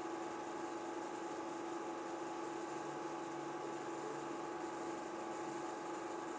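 Film projector running: a steady whirring hum with a constant low tone and a fainter higher one.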